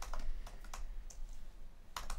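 Typing on a computer keyboard: a few light, scattered keystrokes.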